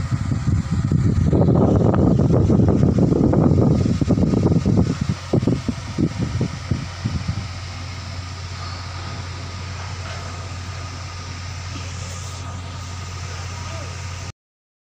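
Small clip-on electric cab fan running with a steady hum and whirr. For the first seven seconds or so a loud, irregular low rumble covers it.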